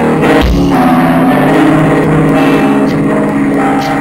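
Live band music amplified through a PA, with sustained guitar and bass notes and a low thump about half a second in.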